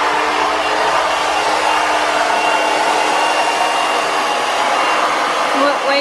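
Handheld hair dryer running steadily, drying a rinsed dog toy: an even rush of air with a faint, thin steady whine.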